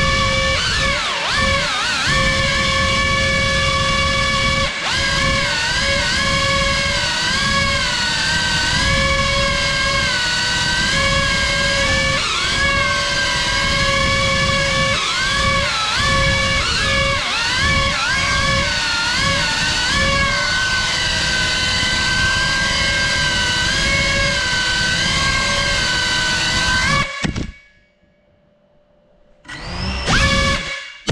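GEPRC CineLog35 cinewhoop drone's brushless motors and ducted propellers whining in flight, the pitch rising and falling with the throttle. The motors cut off suddenly about 27 seconds in and spool back up near the end.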